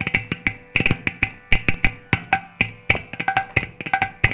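Carnatic percussion: mridangam and ghatam playing rapid, dense strokes in a percussion solo, over a steady drone.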